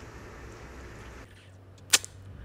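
Faint room noise with a low hum, then a single sharp click about two seconds in.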